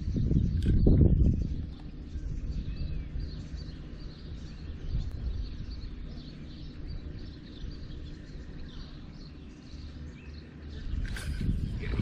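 Small birds chirping over and over in the background over a steady low rumble, with a brief sharp noise near the end.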